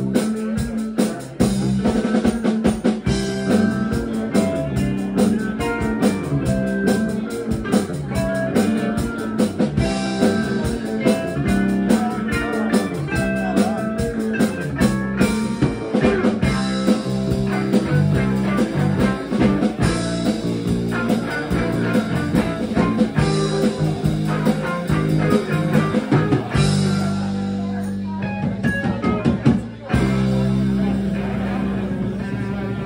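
Live rock band playing through a PA: electric guitars over a drum kit keeping a steady beat. The drumming thins out in the last few seconds under held guitar notes.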